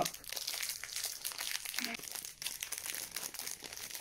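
Plastic cookie wrapper being torn open and its foil inner wrap crinkling: a continuous dense crackle of rustles throughout.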